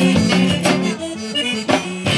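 Live zydeco band playing, with the accordion leading over electric guitar, bass and drums. The beat thins out for most of the second half before the full band comes back in.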